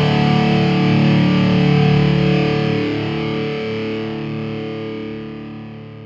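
The final chord of a heavy rock song, held on a distorted electric guitar, ringing out and slowly fading away.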